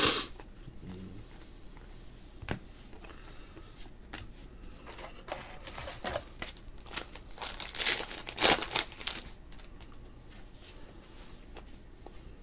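Trading cards being handled and sorted by hand: a sharp snap at the very start, a click a couple of seconds in, then a run of crinkling, rustling handling noise that is loudest about eight seconds in.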